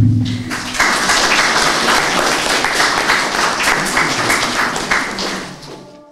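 Audience applauding in a gallery hall, a dense run of clapping that begins about a second in and dies away near the end, after a short low thump at the start.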